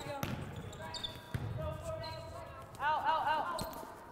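A volleyball being played in a rally: three sharp hits spread over about three seconds as players pass and set it, with a brief call from a player in between.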